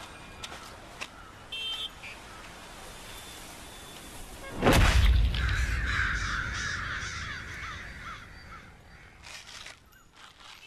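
A flock of crows cawing over and over for a few seconds, over a deep low rumble that swells in suddenly about halfway through and fades away toward the end.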